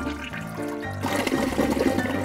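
Toilet flushing, a rush of water that swells about halfway through, over background music.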